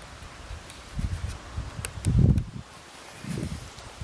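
Wind buffeting the microphone in uneven low rumbling gusts, the strongest about halfway through, with a few faint clicks.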